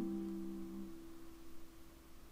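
A ukulele's final strummed chord ringing out and fading away, one note lasting longest and dying out near the end.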